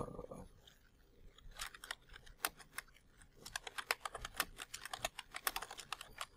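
Typing on a computer keyboard: a quick, irregular run of key clicks starting about a second and a half in.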